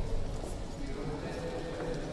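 Voices singing a slow liturgical hymn with long held notes.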